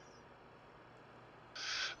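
Near silence: faint room tone with a thin steady high tone, then a brief hiss near the end.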